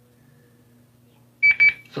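Two short electronic beeps at the same high pitch, one right after the other, near the end: the tone of a caller's line connecting to the call. Before them there is only a faint low hum.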